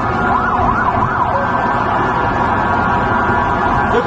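Emergency vehicle sirens over a steady street din, one siren sweeping quickly up and down in pitch during the first second or so.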